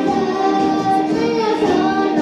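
A small boy singing a melody into a microphone, with musical accompaniment.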